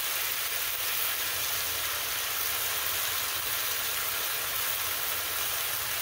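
Sliced chicken frying in oil in a nonstick pan: a steady sizzle.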